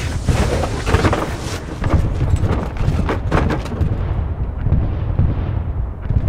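Battle sound effect: a continuous low rumble of explosions with sharp cracks of gunfire through it, loud throughout.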